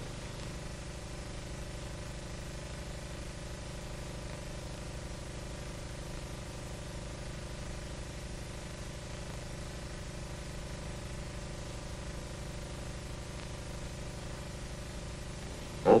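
Steady hum and hiss of an old film soundtrack, several fixed low tones holding unchanged with no other sound.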